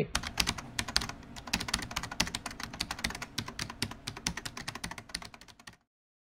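Rapid typing on a computer keyboard, a dense run of key clicks, several a second. It fades slightly and cuts off abruptly near the end.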